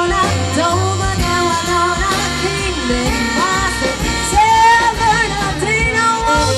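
Live swing band playing, with a woman singing lead over saxophones, guitar, upright bass and drums.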